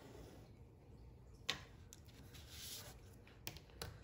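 Faint phone notification alert, the tone that signals a student has submitted an assignment on Schoology. A sharp click comes about a second and a half in, and a few light clicks near the end as a ruler and pencil are moved on the table.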